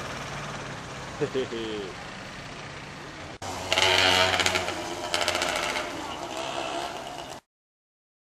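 Street ambience with a steady low engine hum and a short laugh about a second in. After an abrupt cut about three and a half seconds in, louder outdoor hiss with voices takes over, and the sound drops out completely shortly before the end.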